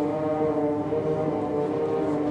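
Concert wind ensemble playing slow sustained chords, the brass holding long notes that move to a new pitch every half second or so.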